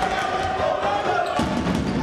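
A basketball being dribbled on a hardwood court, repeated bounces over arena music.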